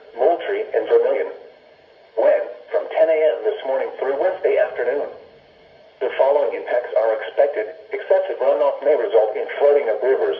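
Spoken NOAA Weather Radio broadcast playing through the small speaker of a Midland weather alert radio, thin and band-limited. An automated announcer's voice speaks in phrases, pausing briefly about one and a half seconds in and again about five seconds in.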